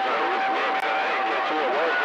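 Voices coming through a CB radio receiver, garbled and overlapping with band noise, with a steady whistle tone running underneath.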